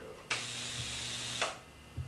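High-voltage Tesla coil apparatus switched on briefly: a harsh hissing buzz over a low hum, starting abruptly about a third of a second in and cutting off a little over a second later.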